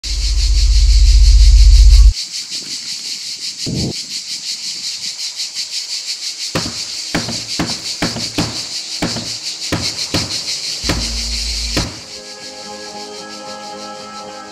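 Sound-design intro: a very loud low rumble that cuts off suddenly about two seconds in. Then a high, fast-pulsing buzz runs on, broken by a string of heavy thumps. Near the end the buzz and thumps give way to soft, sustained ambient music chords.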